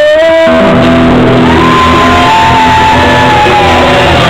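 Live rock band playing loud, with a long held high note from a singer or lead instrument over the full band.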